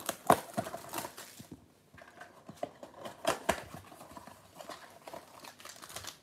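A cardboard trading-card blaster box being opened by hand: a tearing, rustling burst in the first second and a half, then scattered crinkles and light clicks of cardboard and wrapped packs being handled.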